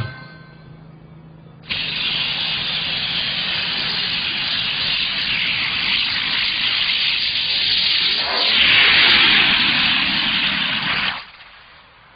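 Twin rocket thrusters on a rocket-powered bicycle firing: a loud, steady rushing hiss that starts abruptly a couple of seconds in, swells louder for a moment later on, and cuts off about a second before the end.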